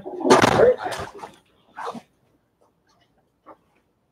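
A person's short, loud vocal outburst in the first second, then a brief fainter vocal sound about two seconds in, followed by quiet.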